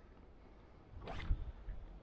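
A short, zip-like rasping rustle about a second in, after a near-silent moment, with a small click near the end.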